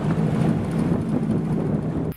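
Bass boat's outboard motor running steadily at low speed, a constant low rumble.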